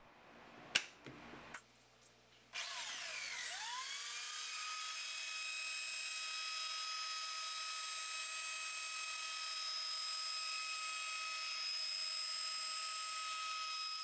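A DeWalt plunge router starting up, its whine rising as the motor spins up about two and a half seconds in, then running steadily as it cuts a turning cherry dowel blank in a jig. A few faint clicks come before it starts.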